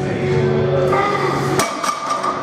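Background music playing, broken about three-quarters of the way in by a sharp metal clank and a lighter knock just after: a loaded barbell set down at the end of the set.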